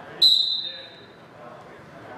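Volleyball referee's whistle: one short, loud blast that starts sharply and fades over about a second, authorising the serve.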